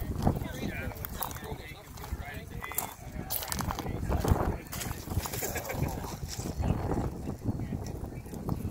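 Footsteps crunching irregularly on railroad track ballast, with faint voices behind.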